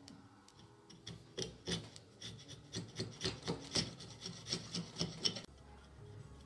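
Steel chisel paring a cross-grain groove in a merbau board held in a bench vise: a quick series of short scraping strokes, about three a second, starting about a second and a half in and breaking off suddenly near the end.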